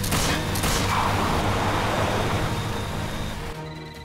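An action-film soundtrack: music mixed with a couple of sharp pistol shots in the first second, fired from a moving car, over a steady rush of car and road noise that eases off shortly before the end.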